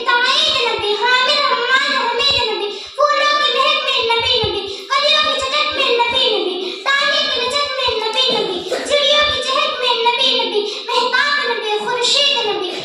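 A girl's voice declaiming a speech in a chanted, sing-song delivery into a microphone, in long phrases broken by short breaths.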